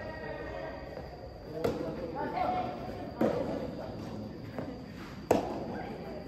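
Soft-tennis rally: three racket strikes on the hollow rubber ball, about a second and a half to two seconds apart, each ringing on in a large indoor hall. The last strike, near the end, is the loudest.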